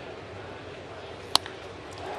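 A wooden baseball bat cracks against a pitched ball: one sharp crack about a second and a half in, over steady low background noise.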